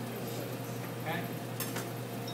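Chef's knife knocking on a plastic cutting board while mincing parsley: a few sharp taps, the loudest about one and a half seconds in.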